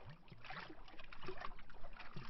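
Small lake waves lapping against a tree trunk: an irregular run of small splashes with a few short, low glugs of water.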